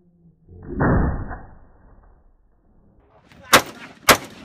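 A single sharp shot from a Colt M4 carbine near the end. About a second in there is a loud, muffled noise lasting about a second.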